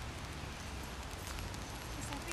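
Steady outdoor background noise: a low rumble with an even hiss over it and a few faint ticks.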